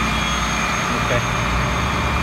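Flatbed tow truck's engine idling with a steady low hum.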